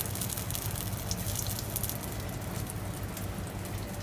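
Ayu (sweetfish) pieces, flesh on the bone, deep-frying in peanut oil in a pan, sizzling with dense fine crackles over a steady low hum.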